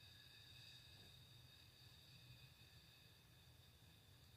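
Near silence: faint room tone with a low hum and a faint, steady high-pitched tone.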